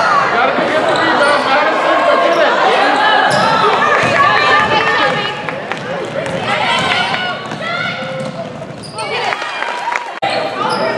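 Many voices shouting and calling over one another in an echoing gymnasium, with a basketball bouncing on the hardwood court. The voices are loudest in the first half and ease somewhat later on.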